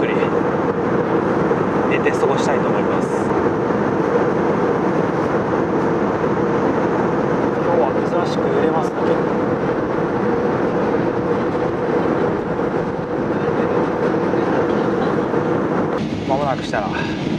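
Airbus A320 cabin noise in flight: a loud, steady rush of engines and airflow with a constant hum underneath.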